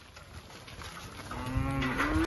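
A black beef cow mooing: one loud call starting over a second in and rising in pitch at the end, after soft shuffling of cattle hooves on gravel.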